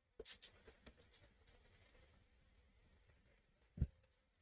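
Faint computer mouse clicks, a quick irregular run of them in the first two seconds, then a soft low thump near the end.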